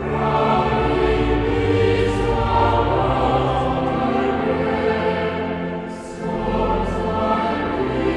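Choral music: a choir singing slow, sustained chords, with a brief dip in level and a change of chord about six seconds in.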